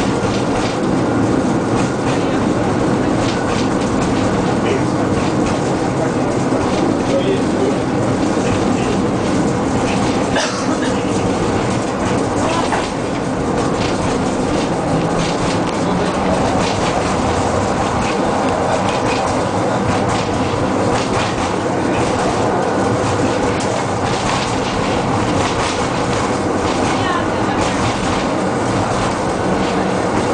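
Tram running along street track, heard from inside the car: a steady rumble of wheels on rails with a droning hum, broken by frequent clicks of rail joints.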